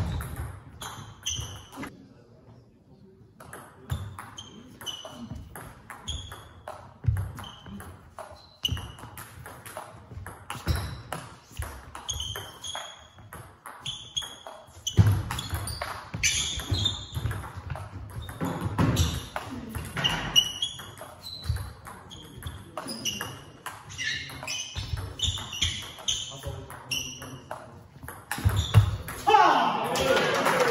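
Table tennis ball being played back and forth in rallies: a quick series of sharp ticks and pings as it strikes the table and the rubber-covered bats, about one or two a second, with a pause early on and a louder burst near the end.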